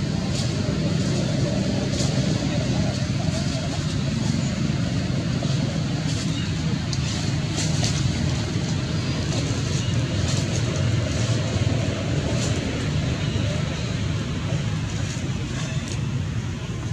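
Steady low outdoor background rumble with indistinct voices and a few faint clicks.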